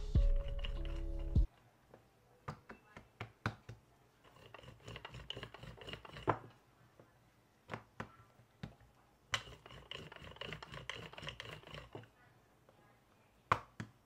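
Background music that stops abruptly about a second and a half in, then a wooden rolling pin working dough on a countertop, with scattered light knocks and taps.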